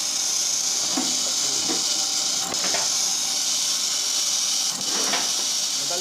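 Agarbatti (incense-stick) making machine running with a steady, even hiss.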